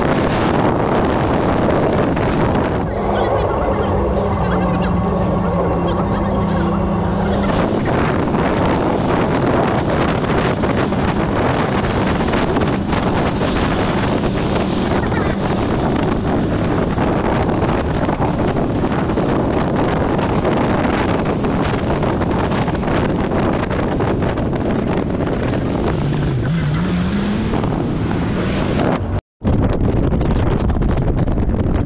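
Wind buffeting the microphone held at the open side window of a minibus moving at road speed, mixed with steady road and engine noise. A short rising whine comes near the end.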